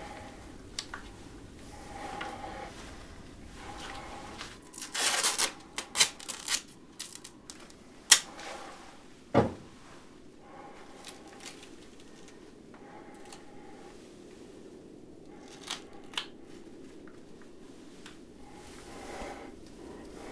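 Rustling and handling of plastic protective suits and cloth as a rag gag is pushed into a man's mouth, with a cluster of small clicks and rustles, a sharp click, and a louder thump about halfway through.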